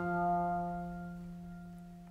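The final held chord of a short closing jingle, ringing on and fading slowly away.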